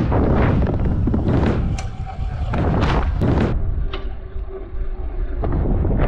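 Heavy wind rumble on the rider's camera microphone as a stunt scooter drops in down a wooden ramp and launches into the air, with surges of rushing air and a faint steady hum in the middle.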